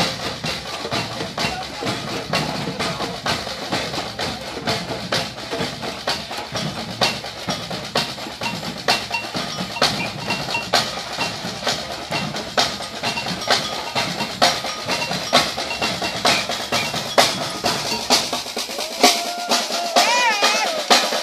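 Samba batucada drum section playing together: deep surdo bass drums with snare drums and repiniques beating out a steady, fast rhythm. Near the end the deep drums drop out and a held tone comes in.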